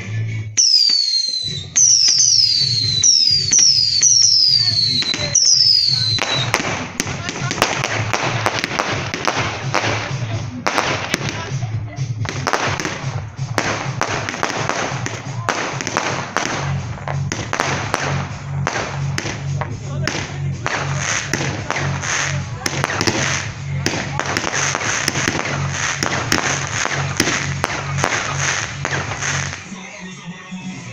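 Fireworks going off over music. In the first six seconds come about five whistles, each falling in pitch. After that comes a dense, continuous crackling and popping, with a steady low beat underneath.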